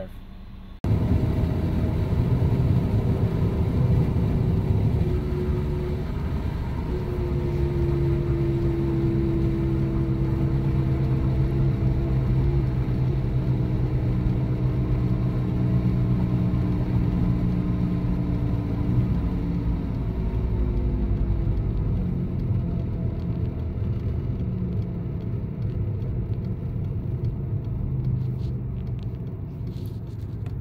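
2007 VW Jetta driving, heard from inside the cabin: engine running at a steady speed over road rumble, its pitch drifting slowly down, on a road test of a freshly replaced 09G six-speed automatic transmission valve body. The sound starts suddenly about a second in.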